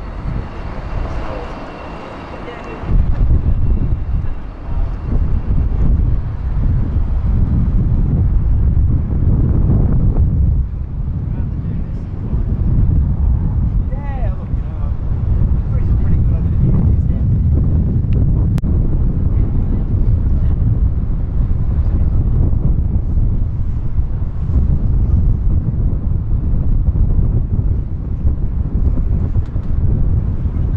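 Wind buffeting the microphone on the deck of a sailing ship, a loud low rumble that sets in suddenly about three seconds in and keeps on, with faint voices underneath.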